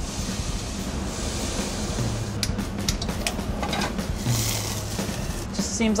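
Alcohol going into hot saucepans on a gas stove: a hiss as it hits the pan, a few metal clinks, and a short second hiss about four seconds in as the alcohol in the pan catches fire for a flambé. Light background music runs underneath.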